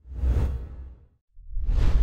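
Two whoosh transition sound effects, each swelling and fading over about a second with a deep low rumble; the second starts about halfway through.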